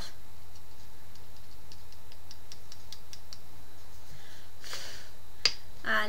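Light tapping clicks, a quick run of about four a second for roughly three seconds, as loose glitter is tapped off a freshly glittered false nail on a plastic nail wheel. Near the end a brief soft rustle and one sharper click.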